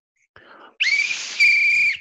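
A coach's sports whistle blown in one long, shrill, steady blast, louder in its second half, calling the team to attention.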